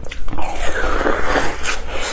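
Close-miked biting and chewing of a blue ice-cream treat. A dense, crackly crunching starts about a third of a second in, with a sharper crunch near the end.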